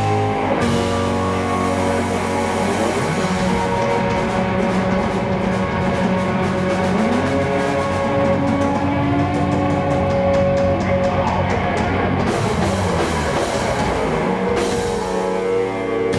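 Live blues-rock band playing an instrumental passage: two electric guitars holding sustained notes over bass guitar and a drum kit with cymbals. A guitar note bends upward about seven seconds in.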